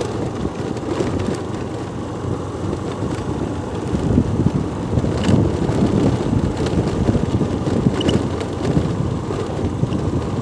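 Wind buffeting the microphone of a moving vehicle: a loud, steady low rumble that turns gustier about four seconds in, over the vehicle's running noise.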